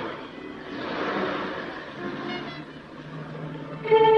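Car engine running as the car pulls away, a noisy rush that swells about a second in and then fades, with a low steady hum near the end.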